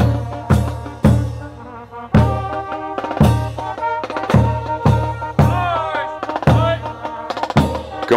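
Marching band playing a march: brass horns and saxophones sounding sustained notes over a bass drum struck about once a second, with snare drum.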